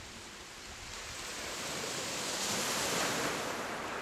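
A sea wave surging up the shore, its rushing wash building to a peak about two and a half to three seconds in, then easing slightly.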